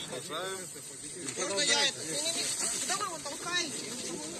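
Several people talking in the street in short exchanges, under a steady high hiss of background noise. The loudest stretch is a little before the halfway point.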